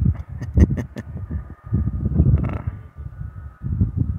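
Wind rumbling unevenly on the microphone, with a few sharp clicks in the first second.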